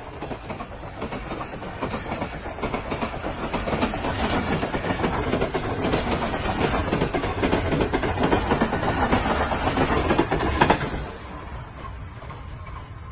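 Express passenger train's coaches passing close by at about 72 km/h, wheels clattering over the rail joints. The noise builds, then drops off suddenly near the end as the last coach goes by.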